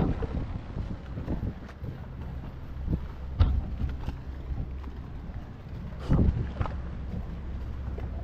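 A steady low rumble of wind on the microphone over open water, with two sharp handling knocks, about three and a half and six seconds in.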